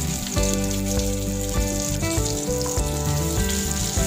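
Dried red chillies and dal frying in hot oil in a steel kadai for a tempering: a steady sizzle, heard under background music with held notes.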